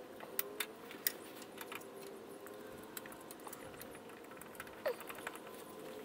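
Scattered light metallic clicks and taps of a 10 mm flare-nut wrench on the clutch slave cylinder line fitting as it is strained to crack the fitting loose, over a faint steady hum. The fitting stays tight.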